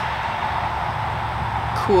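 Steady rushing background noise with no distinct event, holding an even level throughout. A spoken word begins just at the end.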